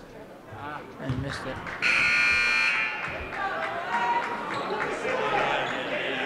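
Gymnasium scoreboard horn sounding once, about two seconds in, a buzz with many overtones lasting just under a second, signalling a substitution. Voices carry on through the hall around it, with a thump about a second in.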